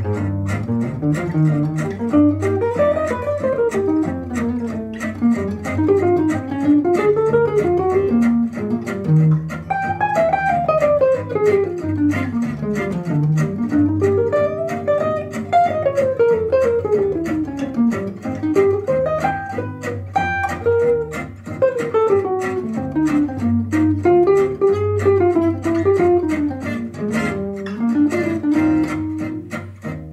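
Archtop jazz guitar playing a fast bebop line of swung eighth notes, runs climbing and falling, over a walking bass line. It ends on a held note near the end, resolving to E-flat.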